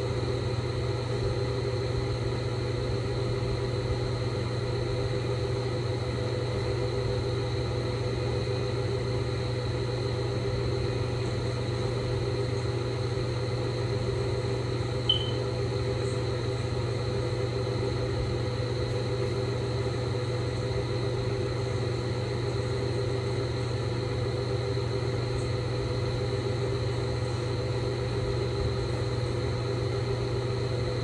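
A steady mechanical hum with a faint high whine above it, unchanging throughout, and one short high chirp about halfway through.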